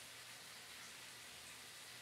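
Near silence: room tone with a faint, steady hiss.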